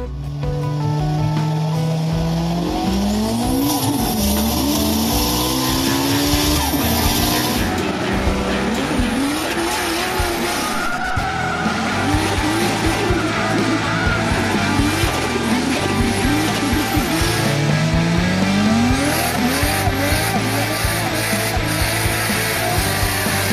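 Racing car engines revving, their pitch rising and falling again and again, with tyres squealing and music underneath.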